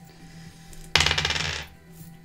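A handful of small plastic twelve-sided tarot dice clatter as they are rolled onto the table. It is one rapid rattle of many small clicks, starting about a second in and lasting well under a second.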